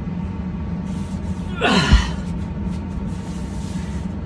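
A man's short vocal exhalation, like a gasp or groan, sliding steeply down in pitch about one and a half seconds in, over a steady low hum.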